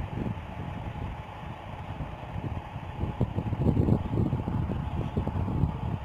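Low, uneven rumbling background noise.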